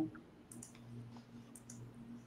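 Faint, irregular clicking at a computer, several light clicks over a low steady hum.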